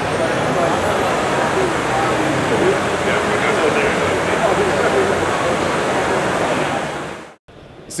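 Whisper Aero electric leaf blower running, a steady rush of air as it blows leaves around inside a mesh cage. A faint high whine climbs over the first second and then holds steady. The sound cuts off suddenly near the end.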